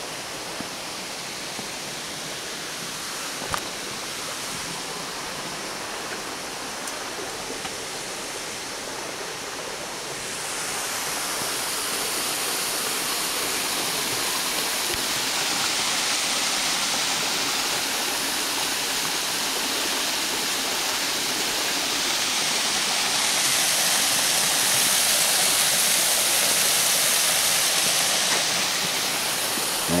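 A waterfall and creek rushing steadily, growing louder about a third of the way in and again later on, with one faint knock a few seconds in.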